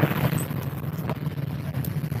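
Loaded bicycle rig rolling along a paved road: a steady low hum with a fast, light rattle and a few faint clicks.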